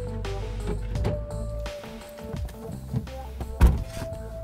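Film score music with held tones, and one loud thunk near the end: a car door shutting.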